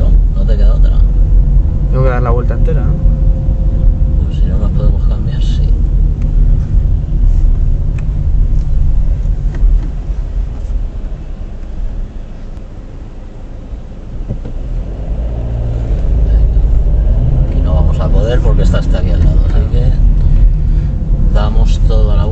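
Road and engine rumble of a car driving, heard from inside the cabin, easing off for a couple of seconds in the middle as the car slows for a roundabout, with indistinct voices near the start and near the end.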